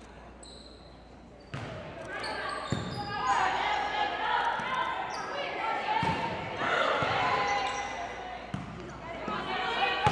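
Volleyball rally in a gymnasium: several sharp smacks of the ball being served, passed and hit, under players and spectators calling out and cheering, with the echo of a large hall.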